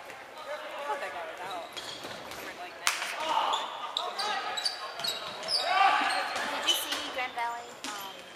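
Dodgeballs being thrown and bouncing on a hardwood gym floor, with a sharp smack about three seconds in and another near the seven-second mark, among players' shouts echoing in a large gym.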